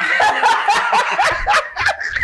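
A man and a woman laughing hard together in rapid, high-pitched bursts.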